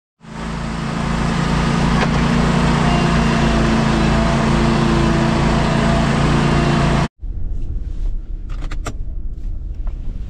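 Stand-on lawn mower's engine running steadily at high throttle, the mower stuck in wet turf and hooked to a tow strap. About seven seconds in the sound cuts off abruptly, giving way to a quieter low rumble with a few clicks.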